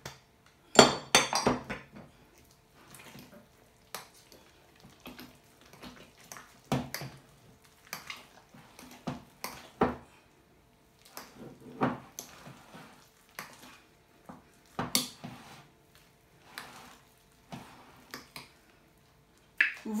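A utensil knocking and scraping against a glass bowl while mashed potatoes are stirred, in irregular clusters of clicks and clinks. The loudest clinks come about a second in.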